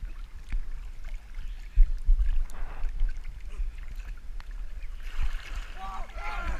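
Swimming-pool water sloshing and lapping against a GoPro camera held at the waterline, heard as a muffled low rumble with irregular thuds and small splashes.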